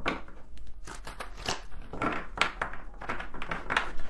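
Tarot cards being shuffled by hand: a run of quick papery slaps and rustles, a few a second, as the deck is worked while waiting for cards to come out.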